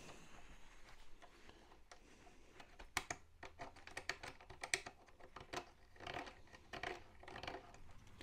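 Faint scattered clicks and light scrapes of metal parts handled by hand: a 1/6 scale tank's metal idler arm being worked at its mount while paint is cleaned from the pin hole.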